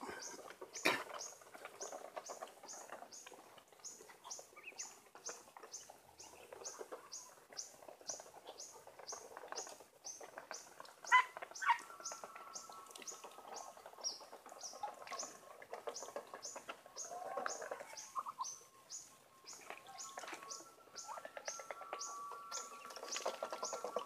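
A small bird chirping, one high chirp about twice a second in an even rhythm. A thin steady whistle-like tone joins about halfway through, and there is one sharp knock a little before.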